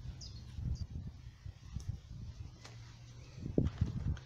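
Low rumbling knocks from a handheld camera being moved, loudest just before the end, with a few short, high bird chirps in the background within the first second.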